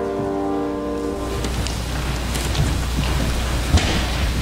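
The hymn's last held chord ends about a second in, followed by the broad rustling rumble of a congregation sitting down and moving about in a large room, with one sharp thump near the end.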